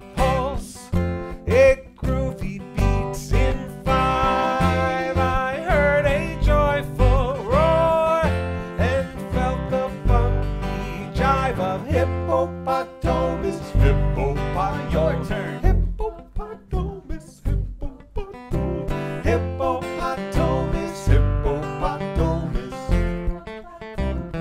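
Acoustic guitar strummed and upright double bass plucked together, playing a bouncy folk tune in five-beat time.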